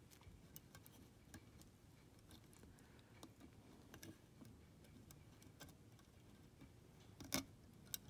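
Near silence with faint, irregularly spaced ticks and clicks of fine enamelled wire leads and fingertips against a circuit board as a toroid transformer is pressed into place, with one sharper click near the end.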